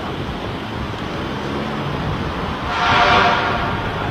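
Steady street traffic noise. Near three seconds in it swells, with a steady pitched tone lasting under a second.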